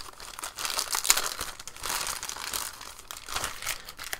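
Thin clear plastic bag crinkling in several irregular bursts as a remote control is pulled out of it.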